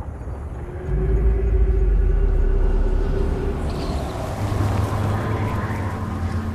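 Massive stone maze doors grinding shut: a deep, heavy rumble that starts about a second in and carries on steadily, with a held groaning tone over its first few seconds.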